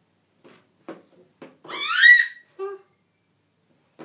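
A baby babbling in short syllables, then letting out one loud, high-pitched squeal that rises in pitch about two seconds in, followed by one more short vocal sound.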